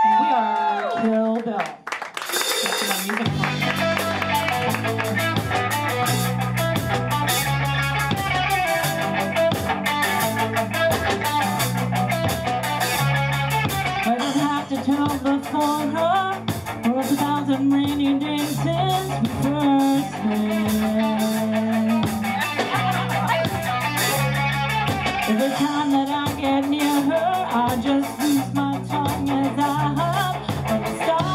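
Live rock band playing: a woman's lead vocal over electric guitar, bass guitar and drum kit. The full band comes in about three seconds in after a short vocal opening.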